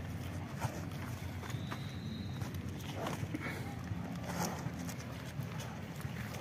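Cattle feeding on corn husks and cobs on bare ground: scattered crunching and rustling as they bite and chew the husks, with hooves shifting.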